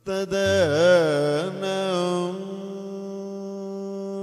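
Male Kathakali vocalist singing in raga Anandabhairavi: a sharp entry with ornamented, sliding pitch for about two seconds, then settling into a long, steady held note.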